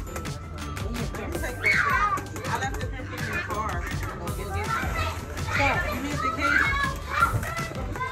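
Young children's voices calling out and shouting at play, in high bending tones, over background music.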